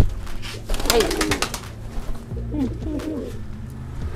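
Domestic pigeons cooing in short falling calls, with a quick flutter of wingbeats about a second in from a released pigeon in flight.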